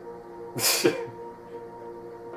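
Soft, steady background music with held tones, broken about half a second in by one short, loud breathy burst from a person.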